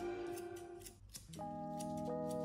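Steel grooming scissors snipping a Yorkshire terrier's coat in a run of quick, crisp cuts, over steady background music.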